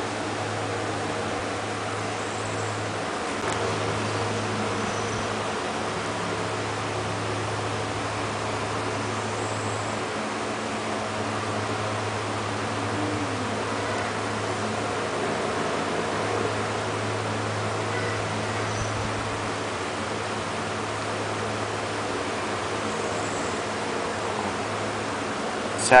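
Steady room noise: a constant low hum with an even hiss and no distinct events.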